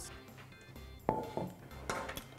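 Background music, with a sharp clink of kitchenware about a second in that rings briefly, and a second clink near the end.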